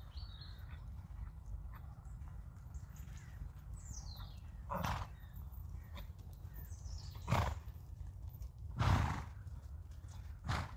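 A horse snorting: three short, noisy blows of breath, the first about halfway through and two more near the end, over a steady low rumble.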